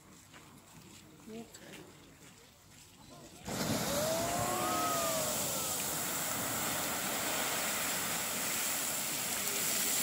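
Geyser erupting: after a few quiet seconds a loud rush of water and steam starts suddenly and keeps going. Onlookers give a couple of rising-and-falling exclamations just after it starts.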